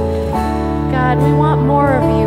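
Live contemporary worship band playing sustained chords on electric guitars, bass and keyboard, with a woman singing a melody over it from about a second in.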